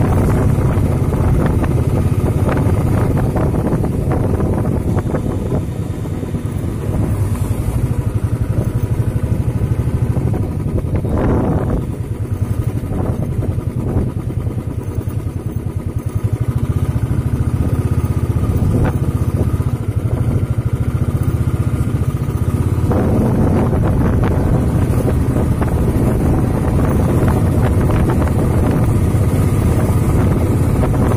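A vehicle's engine running steadily while on the move along a road, with wind noise on the microphone; the sound eases briefly about halfway through.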